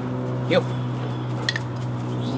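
A steady low hum with several even tones runs throughout. About half a second in a man says "heel" to a dog, and a single sharp click follows at about one and a half seconds.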